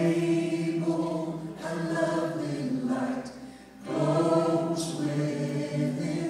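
Southern gospel vocal group singing in close harmony, holding long chords, with a brief break between phrases about three and a half seconds in.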